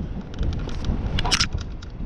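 Wind buffeting the microphone over a low road rumble while riding a bicycle, with scattered small clicks and a brief hiss just past the middle.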